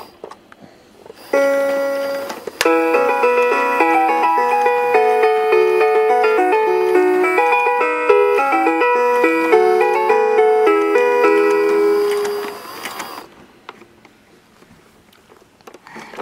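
Baby's electronic activity toy playing a chime note when a button is pushed, then a short electronic tune of quick stepping notes lasting about ten seconds, stopping a few seconds before the end.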